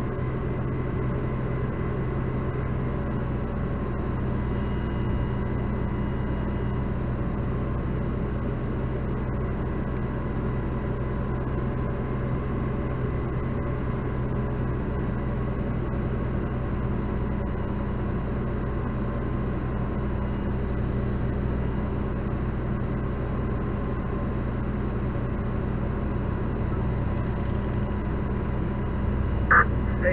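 Fire engine running steadily with its pump engaged to fill the hose line: a constant low engine hum with faint steady whine tones above it.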